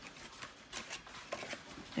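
Light rustling and small taps of card stock as fingers press a paper liner down into the bottom of a small folded paper basket.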